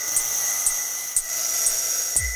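Ambient electronica: sustained high synth tones with a soft, even tick about twice a second.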